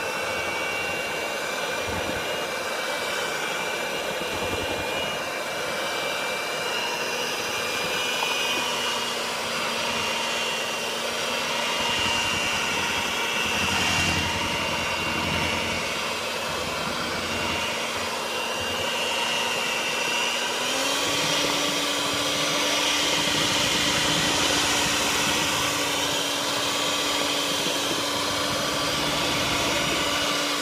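Hamilton Beach electric hand mixer running steadily, its beaters churning through mashed sweet potato pie filling. Its hum steps up slightly in pitch about two-thirds of the way through.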